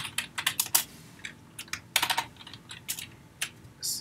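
Computer keyboard typing: irregular short keystrokes, a quick run in the first second, another cluster about two seconds in, and a few single taps near the end.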